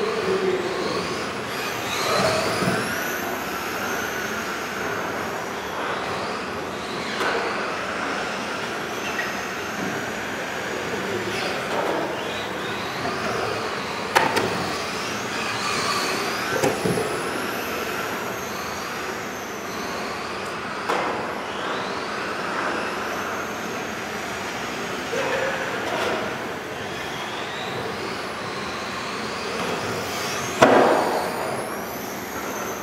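Several electric RC model cars racing in a hall: their motor whines overlap, rising and falling in pitch as they accelerate and slow through the corners, over steady tyre noise. A sharp knock comes about 14 seconds in.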